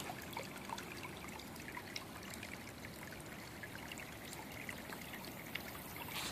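Stream water trickling steadily, with many small scattered drips and ticks and a short click right at the start.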